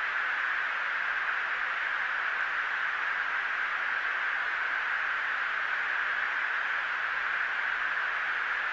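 Steady, even hiss of a fighter cockpit's radio intercom recording, heard in a gap between the pilots' transmissions.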